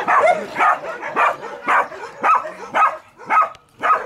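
A dog barking over and over, about two barks a second.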